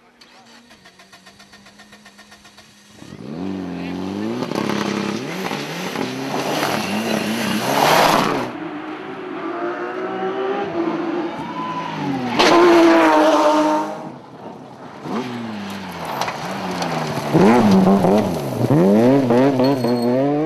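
Rally car engines revving hard at full throttle, their pitch climbing and dropping again and again through the gear changes. The first three seconds are quieter and steady. The loudest passes come about eight, thirteen and eighteen seconds in.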